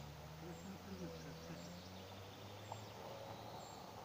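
Faint outdoor ambience: a steady low hum with faint high chirps about once a second.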